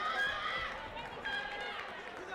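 Several overlapping voices of people calling out and talking in a large hall. A short, steady electronic-sounding tone sounds briefly past the middle.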